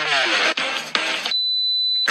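Electronic music that cuts off suddenly about two-thirds of the way through, followed by one steady high-pitched beep, the first beep of a "3, 2, 1, go" race-start countdown.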